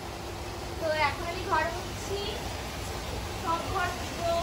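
Indistinct voices talking in snatches over a steady low hum.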